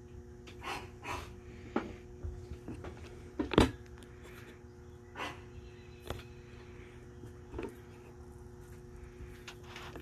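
Light handling noises at a workbench: a scattered series of soft clicks, knocks and rustles, the loudest a sharper knock about three and a half seconds in, over a faint steady hum.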